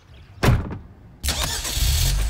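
A sharp thump about half a second in, then a car engine starting up about a second later and running on with a low rumble.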